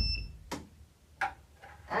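Buzzer of a home-made clothespin door alarm sounding a steady high-pitched tone that cuts off a fraction of a second in as the door is shut, the door's knock still dying away. After that only a couple of faint short knocks.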